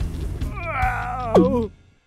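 A cartoon character's whimpering cry, about a second long, falling in pitch, with a quick downward swoop near its end.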